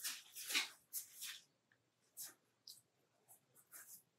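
Fine paintbrush strokes on watercolour sketchbook paper: a series of short, soft, scratchy strokes, the loudest in the first second and a half and fainter ones after.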